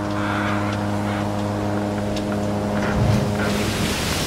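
Ship underway at sea: wind and rushing water with a steady low hum, the hum stopping a little before the end while the rush of wind and water goes on.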